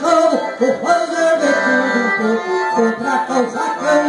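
Accordion playing a lively instrumental melody between sung verses of a gaúcho song.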